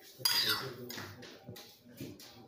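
A metal spoon scraping and clinking against a bowl while scooping sliced cucumber, loudest in a short clatter about a quarter second in, followed by a few lighter clicks.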